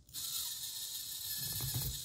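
Small 1/24-scale RC crawler's electric motor and geared drivetrain spinning the wheels in the air, a steady high whir with gear chatter that starts suddenly. Near the end a rough rattle joins as the fully steered tires start to rub on the stand.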